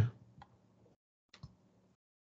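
Two faint computer-mouse clicks about a second apart.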